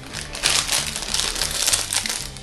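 Plastic wrapper of a protein bar crinkling as it is pulled open by hand, a dense run of sharp crackles.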